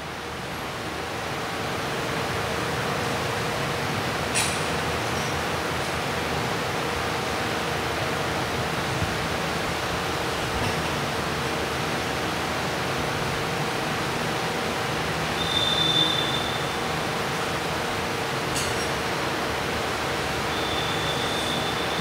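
Steady hiss of room noise with a faint steady hum, swelling over the first two seconds and then holding. Two light clicks come well apart, and a brief high ringing tone sounds about two-thirds through.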